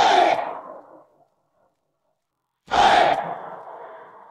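Two shouted vocal calls from an isolated song shout track, one at the start and one a little under three seconds in, each trailing off in reverb.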